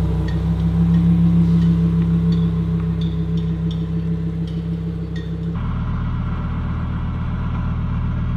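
Lamborghini Huracán's V10 engine running at a low, steady speed as the car pulls away. About five and a half seconds in, the note changes abruptly to a deeper, steady engine sound.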